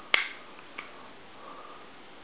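A single sharp click just after the start, then a much fainter click a little under a second later, over low room tone.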